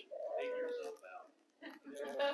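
A faint, indistinct voice away from the microphone: one drawn-out vocal sound lasting about a second, then a few brief murmurs near the end.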